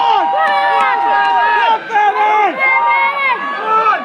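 Spectators shouting over one another, several voices at once. Some of them hold long, loud drawn-out yells through the first couple of seconds, followed by shorter calls.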